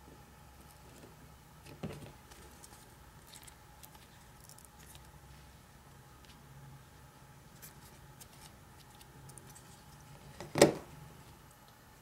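Handling of a plastic breadboard on a pressed-wood mounting base: faint rustles and small clicks, a light knock about two seconds in, and a sharp clunk near the end as the assembled board is set down on the desk.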